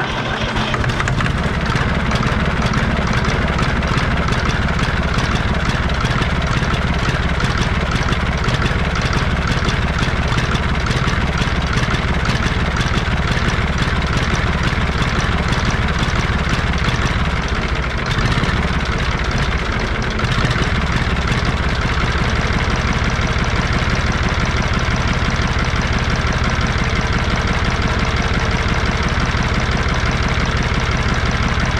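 International Harvester 533 tractor's three-cylinder IH D155 diesel engine running steadily at a fast idle, with an even rhythmic knock of its firing strokes.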